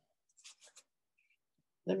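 A few faint, short scratchy strokes of a watercolour brush working paint, a little under a second in.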